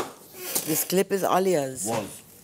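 A voice speaking indistinctly, with a few light clinks of small items being handled on a kitchen counter.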